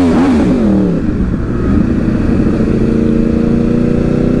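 Two inline-four superbikes, a Yamaha R1 and a Kawasaki Ninja ZX-10R, riding side by side. Their engine note rises and falls through the first second, then holds steady.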